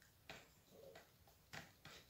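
Near silence with three or four faint, light ticks of a stirring stick against the side of a cup of runny pouring paint as it is mixed.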